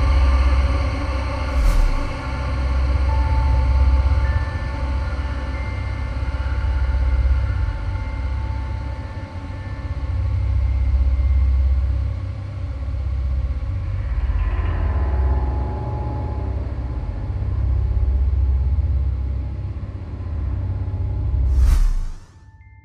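Dark, eerie soundtrack music: a deep rumbling bass drone that swells and fades every few seconds under held high tones, with a short whoosh about two seconds in and a sharp swoosh right at the end.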